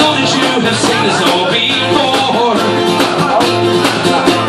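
Live acoustic guitar, strummed in a steady rhythm, with a man singing into a microphone.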